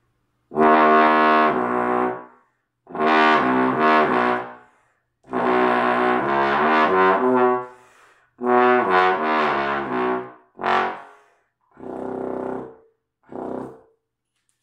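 Conn 60H single-valve bass trombone playing seven slurred phrases of a few notes each, with short breath breaks between them. It is a false-tone practice exercise, played with little effort. The last three phrases are shorter and quieter.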